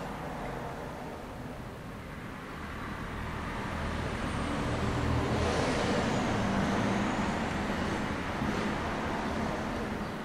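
A vehicle passing by: a steady rush of noise that swells over a few seconds, peaks near the middle with a faint falling whine, then fades.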